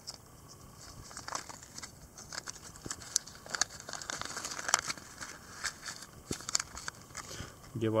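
A small fishing kit being opened and its packaging handled: irregular crinkling and sharp little clicks, the sharpest about three to five seconds in.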